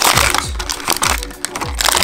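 Background music with a beat of low, falling drum hits, about two a second, over crinkling and crackling of a clear plastic blister pack being handled and torn open to free a die-cast toy car.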